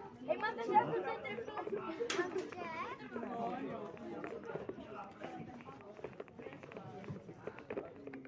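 Several people talking and chattering at once, voices overlapping, with a sharp click about two seconds in.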